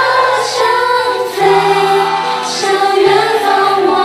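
A group of young women singing a pop song together into handheld microphones over an instrumental backing, with sustained notes and a steady bass line.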